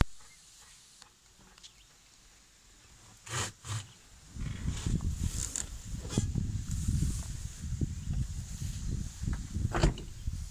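Wind buffeting the phone's microphone in uneven low gusts once the truck door is open, with a couple of brief knocks just before the wind starts.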